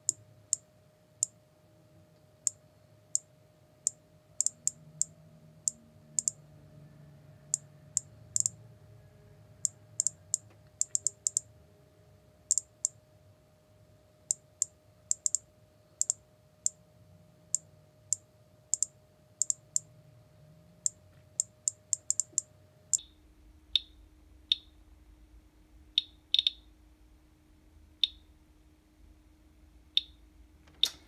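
Radalert 50 Geiger counter's audio clicking at random intervals, about two clicks a second in sped-up playback, each click one detected count of radiation from uranium in a green glass bead; the tally reaches about 75 counts per minute, a few times the household background.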